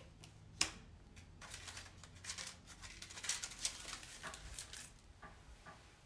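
Small paper cards being handled and laid on a paper layout on a tabletop: light rustling and soft taps, with one sharp click about half a second in.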